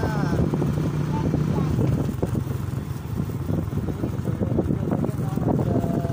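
Small motor vehicle's engine running steadily as it drives along a farm track, with a slight drop in level about halfway through.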